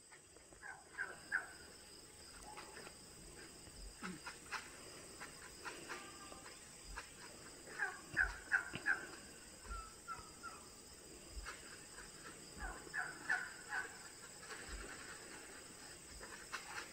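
A small flock of domestic turkeys calling as they walk, in quick runs of short high notes, loudest about eight seconds in.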